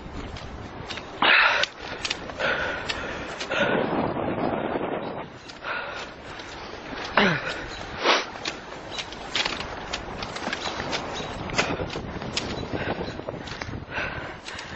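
Footsteps on the gravel ballast of a railway track: a run of irregular crunches and knocks at an uneven pace.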